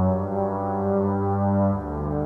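Experimental electronic music: a low, sustained drone of several held tones stacked over a bass note, which steps slightly lower near the end.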